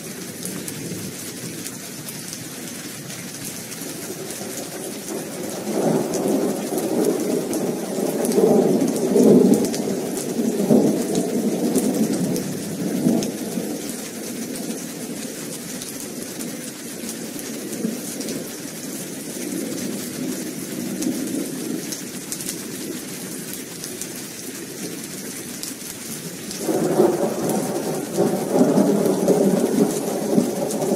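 Steady rain with rolling thunder. A long thunder rumble builds about six seconds in and lasts several seconds, and another begins near the end.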